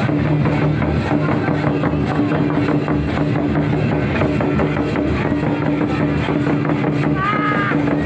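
Hand-beaten double-headed barrel drums (Santhali tumdak') played for a dance, mixed with crowd voices over a steady low hum. Near the end a brief high-pitched call rises and falls.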